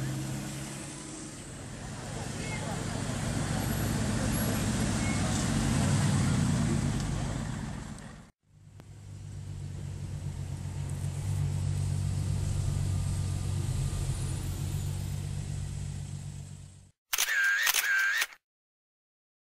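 Car engine and road noise as a Porsche 911 drives past on a city street, then, after a break about eight seconds in, the steady low drone of engine and tyres heard from inside a car moving in slow traffic. Near the end comes a short, loud burst of warbling tones.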